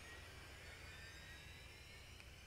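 Near silence: faint steady room hum.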